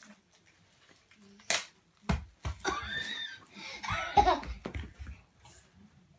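A blind bag packet torn open with one brief sharp rip about one and a half seconds in, followed by a few knocks and a child laughing and making vocal sounds.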